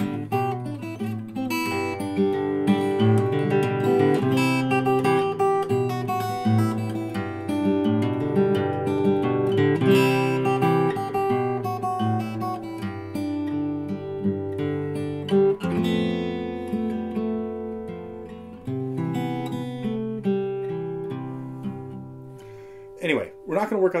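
Acoustic guitar played fingerstyle: plucked, arpeggiated chords ring over moving bass notes, including a B7sus resolving to B7. The playing dies away near the end.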